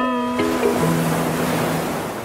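Rush of an ocean wave sound effect swelling over the last held notes of a short guitar music sting, then fading away.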